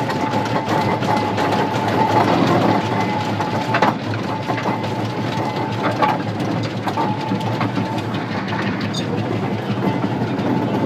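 1904 Fowler road locomotive's steam engine running, heard from the footplate: the crank and valve gear make a steady, busy clatter. A thin steady tone comes and goes over it, and there are sharp knocks about four, six and seven seconds in.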